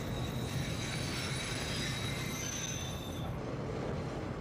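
Subway train running, heard from inside the car: a steady low rumble of the wheels with a high-pitched wheel squeal that stops about three seconds in.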